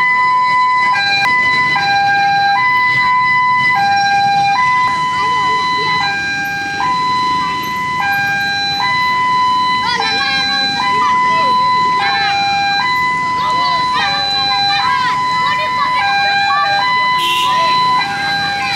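Two-tone hi-lo siren sounding continuously, switching back and forth between a higher and a lower note roughly every second, with crowd voices heard faintly beneath it.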